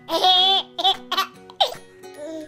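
Baby laughing: one long laugh right at the start, then several short bursts of laughter, over light background music with steady held notes.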